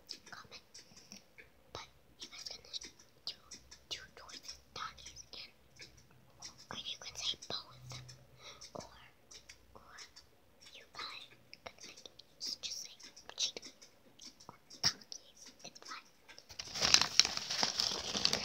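A young girl whispering in short hissy bursts, close to the microphone. Near the end comes a louder crinkling rustle.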